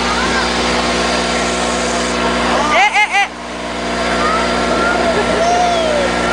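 Steady drone of a passenger boat's engine, with faint voices over it. About three seconds in, a voice cries out loudly three times in quick calls that rise and fall in pitch.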